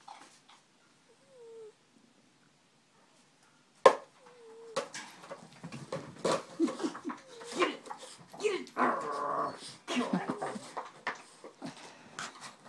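Boston terrier growling and whining in play over a toy, mostly from about five seconds in. A sharp knock comes just before.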